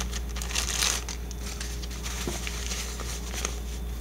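Clear plastic wrapping crinkling as a nylon drawstring pouch is pulled out of it. The crinkling is loudest in the first second, then dies down to a fainter rustle.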